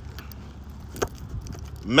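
Steady low rumble inside a car's cabin, with one sharp click about a second in.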